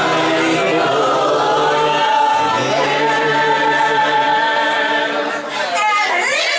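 Live singing with acoustic guitar: a man's voice draws out long held notes as the song closes, easing off just before the end.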